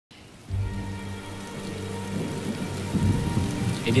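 Steady rain with a low rumble of thunder that sets in about half a second in.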